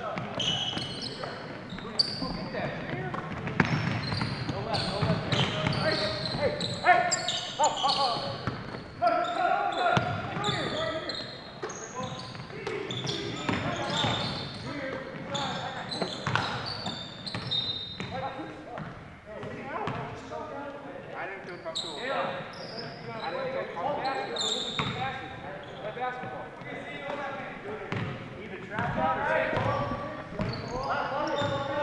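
Live basketball play on a hardwood gym floor: the ball being dribbled, short high sneaker squeaks, and players' voices calling out, all echoing in a large gymnasium.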